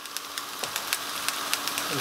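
Chopped onions frying in oil in a pan, a steady fine crackle of sizzling.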